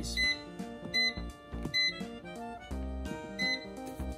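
Background music, over which a Gourmia digital air fryer's touch panel gives about four short, high beeps as its plus button is tapped to step the preheat temperature up to 390 degrees.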